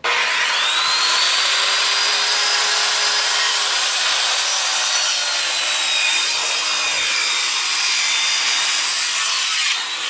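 Corded circular saw starting up and cutting through a wooden post, running steadily with a high whine that sinks slowly as the blade works through the wood. It cuts off near the end.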